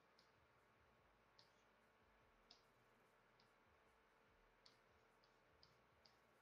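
Near silence with about six faint, irregularly spaced clicks from a computer drawing setup: stylus, mouse or keyboard input during digital painting.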